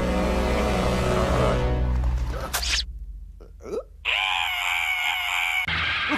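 Cartoon soundtrack: background music that breaks off about two seconds in, a few short gliding sounds, then a character's long held scream near the end.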